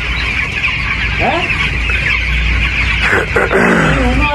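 Dense, steady peeping of a shedful of young chicks, about two weeks old, thousands calling at once as one continuous high chirping chorus.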